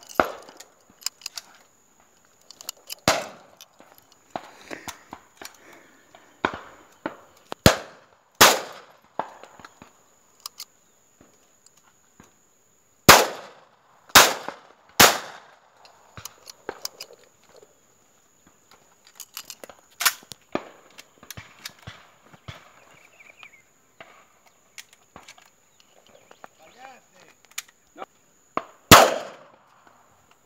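Shotgun shots at doves, about nine in all, some loud and close and others fainter, including three in quick succession near the middle and the loudest near the end.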